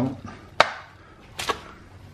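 Metal slotted spatula pressed down through a crisp-baked stromboli crust onto a plastic cutting board: two sharp crunching knocks, about a second apart.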